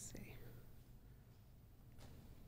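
Near silence: room tone with a steady low hum, and a brief faint sound right at the start.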